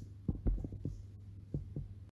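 A scattering of soft, low thumps over a steady low hum.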